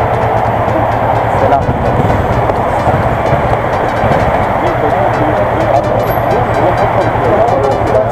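A steady, loud din of engines and traffic with a low hum underneath, and indistinct voices mixed in.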